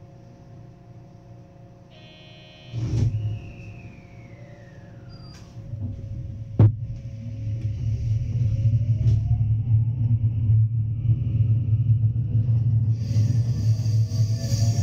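Electric multiple-unit train pulling away from a station. A loud thump comes about three seconds in and a sharp clunk a few seconds later, then the motors' whine rises steadily in pitch under a growing rumble as the train speeds up.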